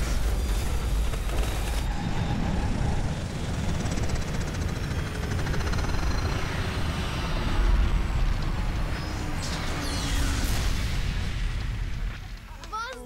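Film sound effects of a spaceship crash-landing: a continuous heavy rumble with hissing noise, loudest about eight seconds in, and a faint whine falling in pitch in the middle.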